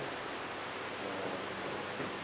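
Steady low hiss of room tone, with no distinct sound.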